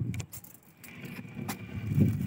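A wire crab trap clinking and rattling as it is handled, with a few sharp metallic clicks over a low rumble.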